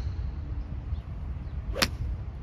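A golf club swung through and striking the ball off a range mat, heard as one sharp crack near the end.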